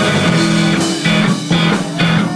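Live rock band playing: electric guitar holding chords over a drum kit, with regular drum and cymbal hits.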